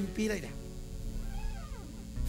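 A quiet, sustained low keyboard chord holding under the fading end of a man's voice, with one faint drawn-out sound rising and falling in pitch in the second second.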